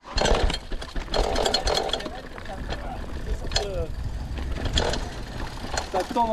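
Mountain bike riding down a rough dirt trail: a steady low rumble of wind on the microphone, with the bike's chain and frame rattling in quick clicks over the bumps.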